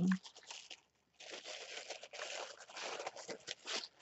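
Irregular crinkling and rustling of mail packaging being handled, starting about a second in and running on in uneven bursts until just before the end.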